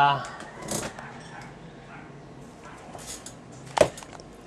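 Faint handling rattles of small objects, then a single sharp knock near the end.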